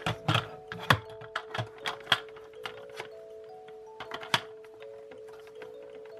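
Plastic clicks and knocks as a spray mop's plastic head and swivel joint are handled and pushed onto the handle, the sharpest snaps about a second in and just after four seconds. Soft background music of held notes plays underneath.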